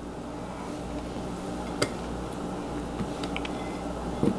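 Quiet, steady low hum of the room with a single light tap about two seconds in and a few fainter ticks near the end, as cubes of cold butter are dropped into the glass bowl of a stand mixer.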